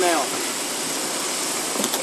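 Jeep Grand Cherokee engine idling steadily during slow manoeuvring, with a couple of faint clicks near the end.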